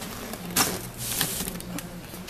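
Cardboard box full of loose screws being picked up and set down, the screws shifting and rattling against each other and the cardboard. There is a sharp rattle about half a second in and a longer one around a second in.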